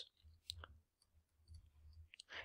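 Near silence with a few faint, short clicks, the clearest about half a second in.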